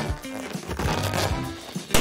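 Background music, and near the end a single sharp pop as a hand-squeezed water balloon bursts.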